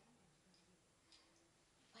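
Near silence: room tone with a couple of faint clicks.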